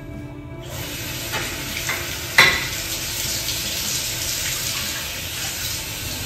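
Water running from a bathtub's taps into the tub, a steady hiss that starts with a rush about a second in. A sharp knock or splash sounds once near the middle.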